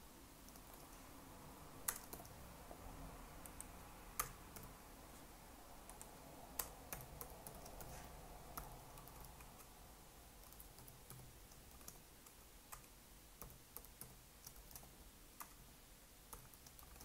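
Faint typing on a computer keyboard: irregular, scattered keystrokes.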